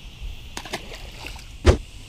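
A small bass tossed back into the pond, splashing into the water within the first second, followed by one louder short thump near the end.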